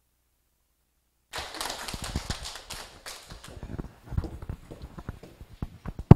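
Sound cuts in about a second in with many overlapping knocks and clicks from chairs and desks as a roomful of people sit down, thinning to scattered single knocks.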